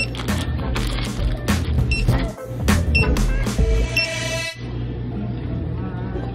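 Handheld barcode scanner at a shop checkout beeping three times, about a second apart, as items are scanned, over crinkling plastic snack packaging.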